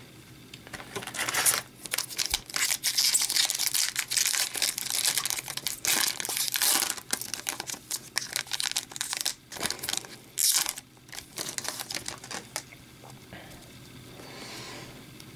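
Foil wrapper of a hockey card pack crinkling and tearing as it is opened and the cards are pulled out. An irregular crackle runs for about twelve seconds, with one louder crackle about ten seconds in.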